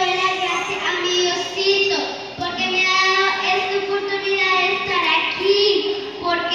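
A young girl's voice through a microphone and PA in a large hall, delivered in a sing-song way on long, level held notes rather than ordinary talk.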